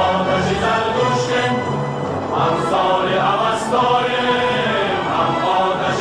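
Music: a choir of voices singing a slow, chant-like song.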